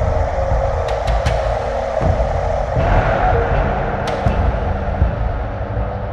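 Dark ambient electronic music: a deep rumbling low end under a steady held drone, with a few sharp clicks and a brighter swell about halfway through.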